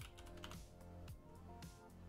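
Faint computer keyboard typing, a few scattered keystrokes, over quiet steady background music.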